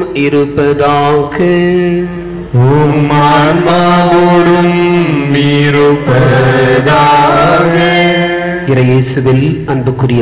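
A priest chanting a sung prayer of the Mass into a microphone: one male voice holding long notes and stepping from pitch to pitch, with a brief break about two and a half seconds in.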